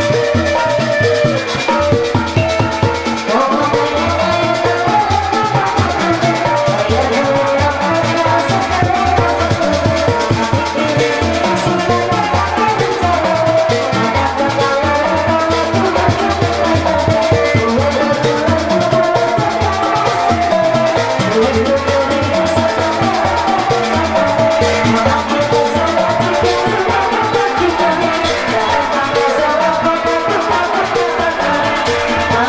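Live kuda renggong music from a Sundanese ensemble: fast, steady drumming under a wavering melodic lead.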